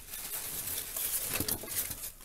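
Clear plastic packaging crinkling and rustling as a hand grips and shifts it, with a few sharper crackles in the second half.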